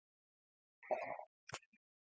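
Dead silence, broken about a second in by a faint, brief soft sound and then a single short click half a second later.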